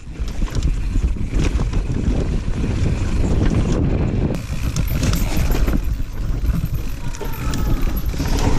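Mountain bike descending rough dirt and rock trail: wind buffeting the microphone and tyres rolling over the ground, with constant irregular rattles and knocks from the bike as it rides over rocks and roots.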